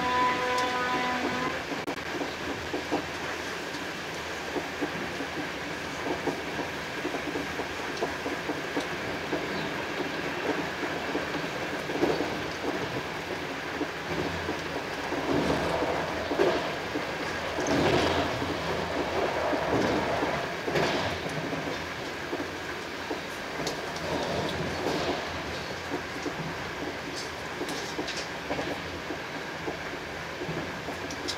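Steady rolling noise of a passenger coach of an express train at speed, heard from inside, with wheels clicking over the rails. About halfway through comes a louder stretch of rattling and clatter lasting several seconds.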